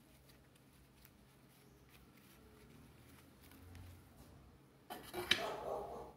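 Faint rustling and small clicks of a satin ribbon bow being pinched and adjusted by hand. About five seconds in, a louder handling clatter with one sharp knock as a hot glue gun is brought up to the bow.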